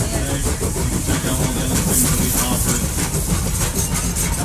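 Passenger excursion train running, a steady rumble and rattle heard from aboard a moving car.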